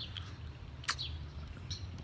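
Quiet outdoor background with a steady low rumble and a single short bird chirp about a second in.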